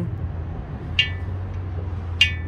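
A single sharp metallic click with a brief ring about a second in, from the spring-loaded ratchet latch inside the head of a Torin BIG RED steel jack stand being worked by hand. A steady low hum runs underneath.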